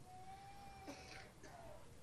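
Near silence: room tone, with a faint thin steady tone held for about the first second.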